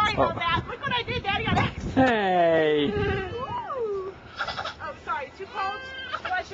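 Voices of a toddler and adults playing: wordless vocal sounds, with a long, loud drawn-out call falling in pitch about two seconds in, followed by a sliding 'ooh'-like glide.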